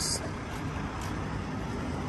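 Steady low rumble of background vehicle noise, with no single event standing out.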